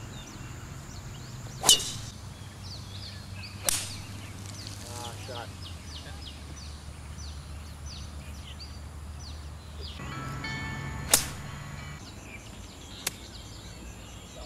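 Golf shots: the club head striking the ball with a sharp crack three times, about two seconds in, two seconds later, and again near the end, the first the loudest. Faint chirping runs underneath.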